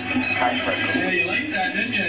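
Talk-show audio played through a television speaker: voices with music underneath, over a steady low hum.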